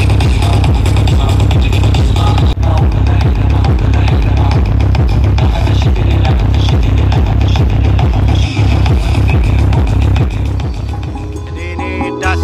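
Loud electronic dance music with a heavy bass beat played through large stacked outdoor sound-system speakers. Over the last two seconds it thins out and gets quieter.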